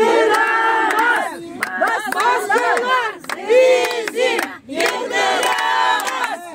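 Several women shouting and screaming over one another in high, strained voices, in loud waves broken by brief gaps.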